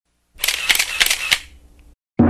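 Camera shutter sound effect: several quick shutter clicks in a burst lasting about a second, then a short fading tail.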